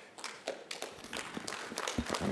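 Audience applauding: many hands clapping together as a panellist's remarks end.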